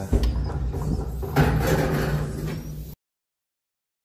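Scraping and handling noises with a low rumble, cut off suddenly about three seconds in.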